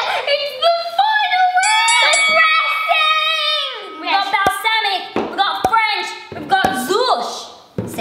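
Children's voices making drawn-out, sing-song exclamations with no clear words, with a long held note in the first half. A few light knocks come as plastic salad-dressing bottles are handled on a wooden bench.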